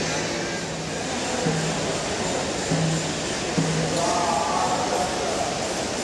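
Temple ambience: music and voices over a dense, steady crowd din, with short low notes repeating about once a second and a higher held tone about four seconds in.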